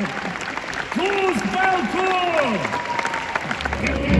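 Concert audience applauding in an arena, with a man's voice calling out over the clapping in a few long, drawn-out, rising-and-falling calls. A low orchestral rumble, the start of the timpani, comes in just before the end.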